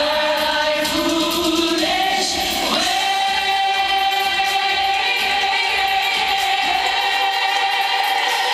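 A small group of women singing in harmony into microphones, holding one long, steady note from about three seconds in.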